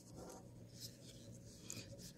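Near silence: faint room tone with a low steady hum and a few faint rustles.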